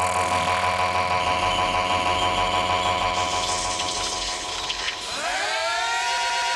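Techno breakdown with no drums: a buzzy, sustained synthesizer chord that sweeps upward in pitch about five seconds in.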